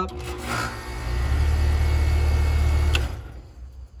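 Air-conditioner condensing unit started by pushing its contactor in by hand: a click, then the compressor's steady low hum with a rushing noise that grows louder about a second in. It runs without a hard start kit and draws about 23 amps at startup. About three seconds in it cuts off with a click and fades away.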